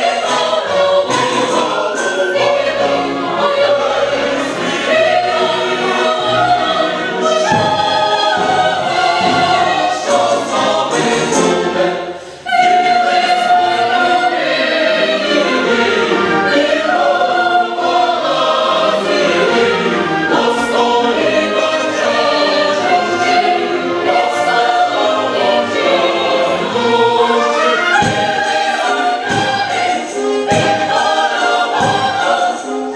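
Mixed choir of men's and women's voices singing an operatic chorus, with orchestral accompaniment. The sound drops away briefly about twelve seconds in, then the full chorus resumes.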